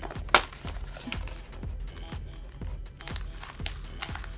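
Self-adhesive vinyl sheet crinkling and crackling as it is peeled up and handled, with one sharp crackle about a third of a second in. Background music plays underneath.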